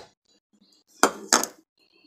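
Two quick, sharp clinks of hard kitchenware knocking together, about a second in and a third of a second apart.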